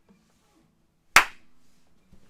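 A single sharp clap about halfway through, dying away quickly.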